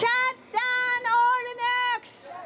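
A woman's high voice singing long held notes into a handheld microphone: a short note, a brief break, then a longer note that steps slightly in pitch partway through.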